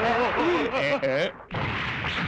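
A man's voice cries out, wavering. About one and a half seconds in, a sudden heavy crash with a rumble follows: an anime sound effect of a horse's hoof stomping down and cracking the ground.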